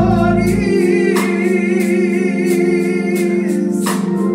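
Gospel vocal group singing with organ accompaniment; a lead voice holds a long note with vibrato over steady sustained organ chords.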